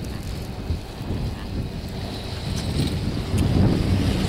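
Wind buffeting the microphone on a moving chairlift: a rough, low rushing noise that grows louder near the end.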